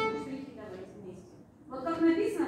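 A children's string ensemble of violins and cello breaks off, its last bowed notes fading out within the first half second and ringing briefly in the room. A woman's voice starts near the end.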